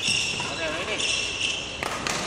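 Court shoes squeaking on a wooden sports-hall floor during badminton footwork: several short, high squeaks, then a sharp footfall stamp near the end.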